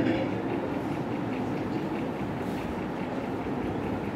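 Steady background noise of the hall during a pause in speech, an even rushing hiss with a faint, evenly repeating ticking in it.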